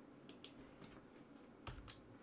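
A few faint, short clicks of a computer keyboard being typed on, with a slightly louder pair near the end.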